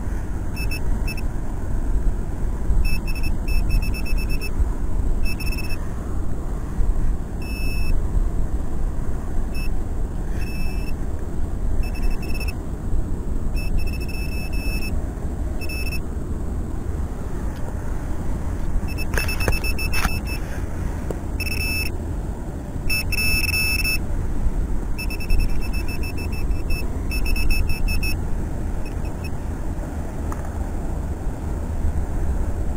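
Metal-detecting pinpointer beeping in short bursts and rapid pulses of a high tone as it is probed in a dug hole of soil, over a steady wind rumble on the microphone. A brief scrape in the soil comes about twenty seconds in.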